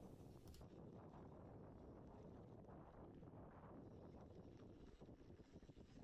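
Near silence: a faint, even rush of wind noise on the camera microphone as the bike rolls down a dry dirt trail.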